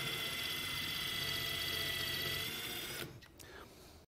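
Cordless drill running at steady speed with a spring-loaded self-centering hinge bit, drilling a pilot hole into plywood through a countersunk hole in an aluminium T-track: a steady motor whine that stops about three seconds in.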